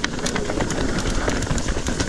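Trek Fuel EX 7 mountain bike rattling over a rough, rocky trail: a rapid, irregular clatter of knocks and clicks over a low rumble.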